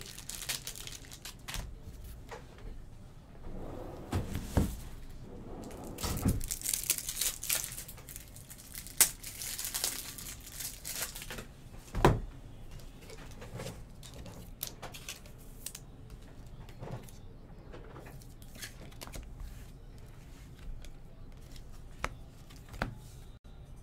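Crinkling and rustling of trading-card packaging and cards being handled, with scattered light clicks and a few heavier knocks, the loudest about twelve seconds in.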